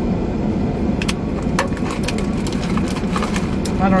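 Steady low hum of an idling car heard from inside the cabin, with a few short clicks and sucking sounds as an iced drink is sipped through a straw.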